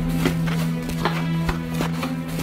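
Film background score: a held low drone with sparse, evenly spaced percussive hits, about two or three a second.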